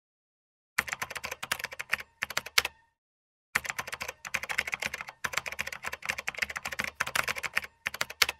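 Computer keyboard typing sound effect: rapid key clicks in a run of about two seconds starting just under a second in, then, after a short pause, a longer run from about three and a half seconds.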